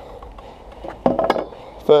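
Brief metallic clink and clatter about a second in as a stunt scooter is set down and leaned against a metal railing.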